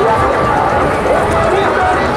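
Large crowd of spectators talking at once: a loud, steady hubbub of many overlapping voices.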